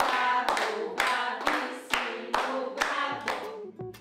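A small group clapping in a steady rhythm, about two claps a second, while their voices chant 'bravo' along with the beat as a cheer for a child.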